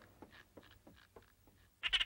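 A cartoon mouse's short, high-pitched, quavering vocal sound near the end, after a stretch of faint scattered small sounds.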